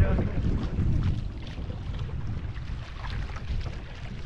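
Wind buffeting the microphone over water rushing and splashing along an outrigger canoe's hull as it is paddled across small ocean swells.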